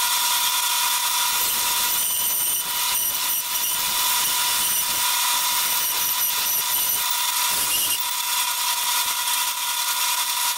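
Bandsaw running with a steady whine, its blade cutting through a red elm blank for a hand-plane tote.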